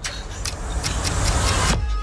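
A loud, deep rumble with a rushing hiss over it that cuts off suddenly near the end.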